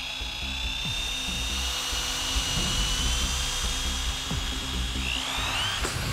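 Handheld electric drill boring into a steel safe door: a high steady whine that sags slightly under load, with a short rising whine near the end. Music plays underneath.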